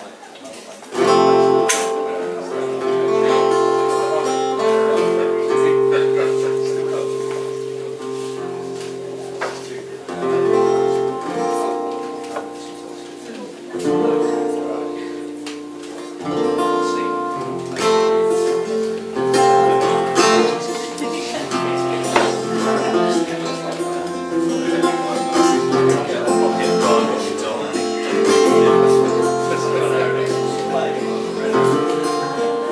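Solo acoustic guitar strumming and picking ringing chords as a song's instrumental opening, starting about a second in.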